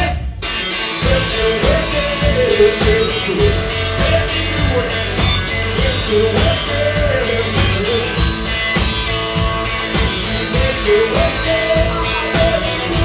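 Live rock band playing: Telecaster-style electric guitar and drums, with a lead line of bending notes over the beat. The music drops out for a moment right at the start and then comes back in.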